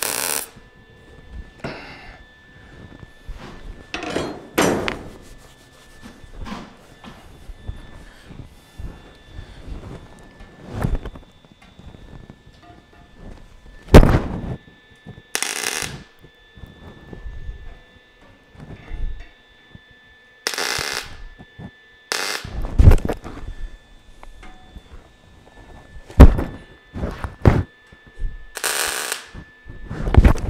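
MIG welder laying short tack welds on 18-gauge sheet steel: about five brief crackling bursts, each under a second, spaced several seconds apart. Between them come a few sharp metal knocks.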